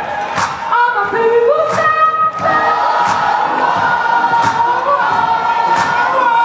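A live band with several voices holding long sung notes together, a beat hitting about every second and a half, and crowd noise underneath, heard from among the audience.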